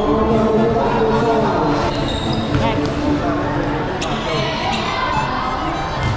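Basketball bouncing on a hardwood-style court during a game, echoing in a large covered gym, with players and spectators shouting over it.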